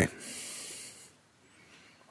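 A man drawing breath between sentences: a short, airy in-breath lasting about a second.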